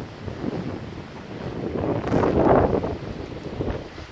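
Strong wind buffeting the microphone in gusts, swelling to its loudest about halfway through and then easing.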